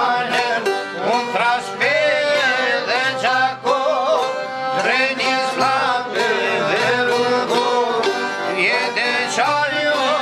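Albanian folk song played live: men singing together over a plucked çifteli and a larger long-necked lute, with a violin.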